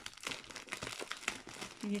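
Plastic packaging of a paper set crinkling as it is handled and opened: a quick run of small crackles.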